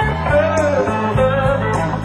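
Live band playing a slow blues, with a lead electric guitar answering the vocal line with two bent, sustained notes.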